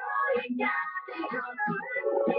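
A young girl singing.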